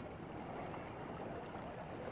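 Steady outdoor noise of wind and water, with no distinct event.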